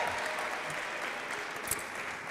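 Congregation applauding, an even patter of clapping, with a single sharp click near the end.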